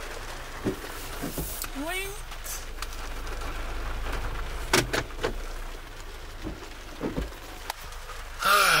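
Inside a slowly moving car: a low, steady engine and road rumble, with a few sharp clicks about five seconds in.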